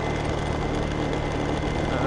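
A small motorbike engine running steadily while riding along, with road and wind noise.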